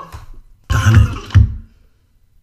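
A person clearing their throat: one short two-part sound about a second in.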